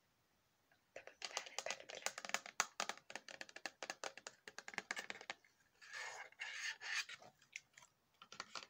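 Fingernails tapping and scratching rapidly close to the microphone. A fast run of sharp clicks starts about a second in and lasts about four seconds, then comes a short scratchy rustle and a few last taps.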